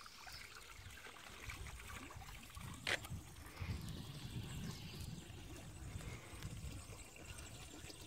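Faint trickle of water running from a stone fountain spout into its basin, with a single sharp click about three seconds in.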